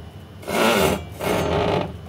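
Rock saw's vise carriage being pulled back along its rails after a cut, scraping in two strokes of about half a second each.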